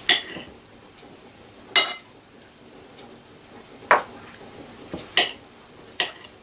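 A knife cutting mushrooms on a plate, the blade knocking against the plate four times, each a sharp clink with a short ring, with quiet between.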